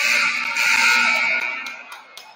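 Gym scoreboard horn sounding in one loud, harsh blast that starts abruptly, holds for about a second and a half, then fades.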